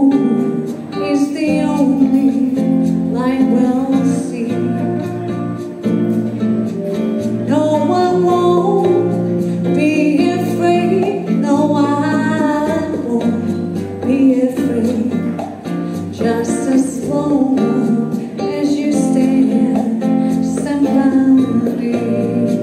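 Live music from a saxophone and a female singer over a backing track with bass and guitar.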